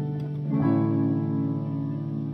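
Yamaha digital piano playing sustained chords with both hands, a new chord struck about half a second in and held.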